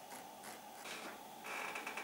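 Faint scratching of a felt-tip marker drawn in several short strokes over fabric strap webbing, with a little handling noise of the webbing near the end.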